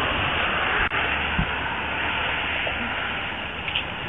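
Steady hiss of a police dash-camera audio feed, road and traffic noise mixed with static, with a brief dropout about a second in.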